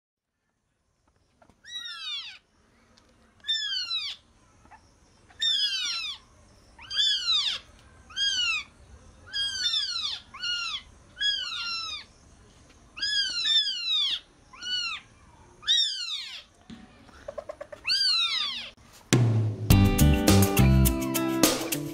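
Baby African civet calling over and over: a high, cat-like mew that falls in pitch, about a dozen calls a second or two apart. Music comes in loudly about a second before the end.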